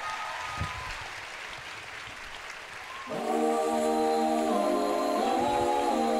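Audience applause for about three seconds. Then a six-voice a cappella group sings a sustained chord in close harmony, shifting to new chords twice.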